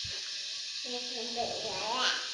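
Steady faint hiss of background recording noise. About halfway through, a faint, steady voice-like tone is held for about a second.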